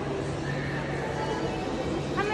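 Busy shopping-mall ambience: a steady low hum under scattered voices, with a brief higher call.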